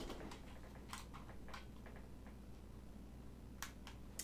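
A few quiet, scattered clicks and taps of computer keys and mouse buttons, several in the first second and a half and two more near the end, as a mouse that has stopped working is tried.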